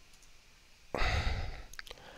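A man's sigh, a short breath out into the microphone about a second in, followed by a few faint clicks.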